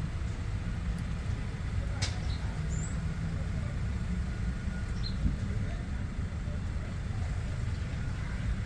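A low, steady outdoor rumble with a faint click about two seconds in.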